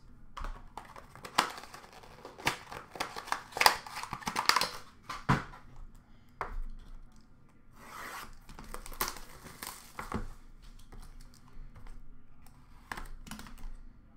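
A sealed hockey card box being torn open by hand: bursts of tearing and crinkling of the wrapping and cardboard, mixed with sharp clicks of handling. The loudest stretch is in the first half, with another burst of tearing a little past the middle.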